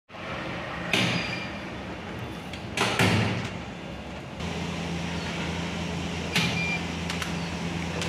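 eSSL ET-1200 tripod turnstile clunking as its rotating arms unlock and turn: a few sharp mechanical knocks, about a second in, near three seconds, and twice more later on. A steady low hum sets in about halfway.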